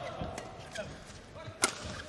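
A badminton racket strikes the shuttlecock once with a sharp crack about one and a half seconds in, with fainter taps before it.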